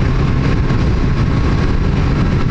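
Motorcycle riding at road speed, heard from the rider's helmet: a steady engine drone mixed with dense low rumbling wind noise on the microphone.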